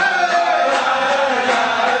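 A group of voices singing together in a slow, chant-like melody.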